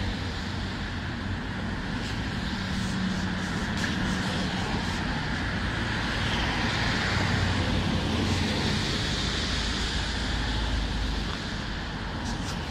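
Street traffic on wet asphalt: cars passing with tyre hiss and engine noise. It grows louder about halfway through as a heavy dump truck and a van go by, and eases off near the end.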